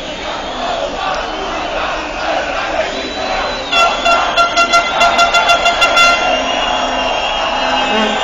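Noise of a large street crowd. About four seconds in, a vehicle horn sounds in a rapid series of short honks for about two and a half seconds, louder than the crowd.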